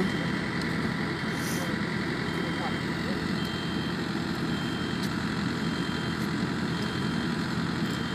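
Engine-driven core-drilling rig running steadily on a bridge deck while cutting core holes. A faint high tone comes and goes about once a second over the engine noise.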